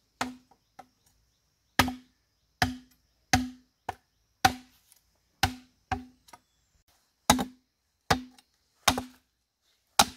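Machete chopping into the base of an upright bamboo pole: about a dozen sharp blows, roughly one a second, each with a short hollow ring from the bamboo.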